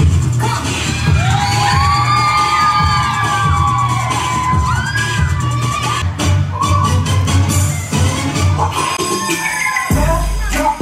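Upbeat dance music with a steady, heavy beat, over an audience cheering and children shouting.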